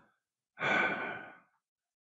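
A man's breathy sigh, a single exhale just under a second long starting about half a second in. It comes as a hesitation while he searches for a word.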